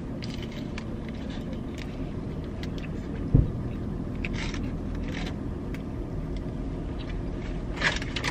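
A person chewing a bite of burger, with its foil wrapper crinkling now and then, over the steady low hum of a car interior. A single dull thump about three and a half seconds in.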